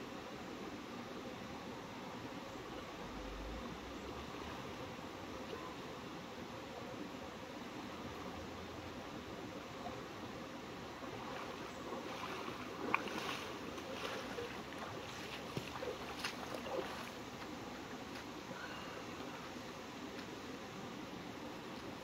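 Steady rush of a shallow creek flowing over rocks, with splashing from legs wading through knee-deep water about halfway through.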